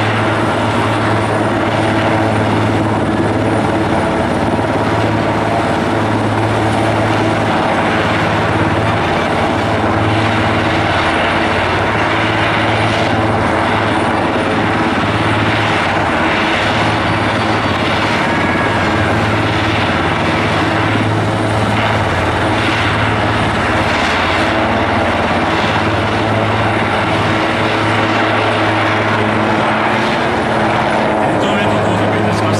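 Large twin-turbine Super Puma-type fire department helicopter hovering low, its rotor and engines making a loud, steady sound with no let-up.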